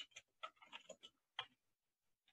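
Computer keyboard typing: a quick run of faint keystroke clicks, the loudest about one and a half seconds in, then stopping.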